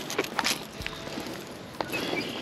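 Footsteps through grass at the edge of a riprap bank: a few light scuffs and crunches.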